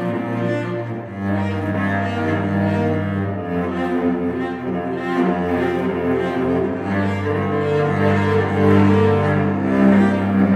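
Solo cello playing slow, long bowed notes in the low register, with higher notes sounding over them. The low note changes about a second in and again later.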